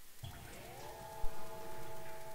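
Drum and bass music in a quiet passage between beats: a synthesizer chord slides up in pitch and then holds steady, with a single low hit just past halfway.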